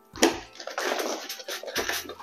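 Rustling and crinkling of plastic wrapping and paper as hands handle the packed parts in an open cardboard box, starting with a sharp crackle and running on unevenly until just before the end.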